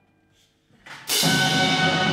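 Orchestral ballet music: a near-silent pause after a chord dies away, a brief pickup, then the full orchestra comes in loudly about a second in, with percussion and sustained chords.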